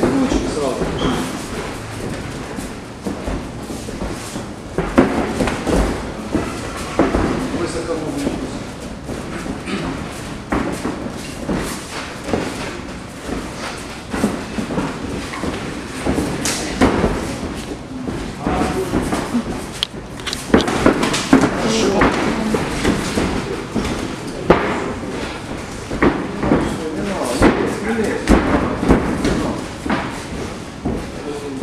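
Thuds and slams of an MMA fight in a cage: strikes landing and fighters going down on the mat. There are many sharp impacts, in clusters, over continual voices.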